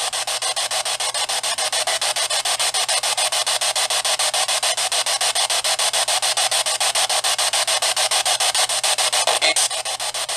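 Hiss and static from a small handheld speaker, chopped rapidly and evenly as a ghost box sweeps through radio stations, with no clear words. A short, different burst breaks through near the end.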